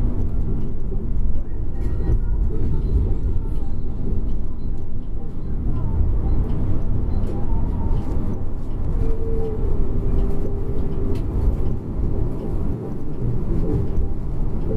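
Yutong Nova coach at highway speed, heard from the front of the cabin: a steady low engine and road rumble.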